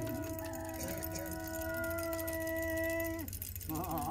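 A single long, steady note with overtones, held for about three seconds and then stopping cleanly, in a pause in the ritual drumming; a wavering, vibrato-laden note starts up just before the end.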